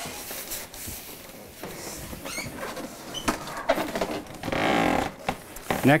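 Large cardboard appliance box being tipped over and handled: scattered knocks and scrapes of cardboard, with a longer, louder scraping rustle about four and a half seconds in.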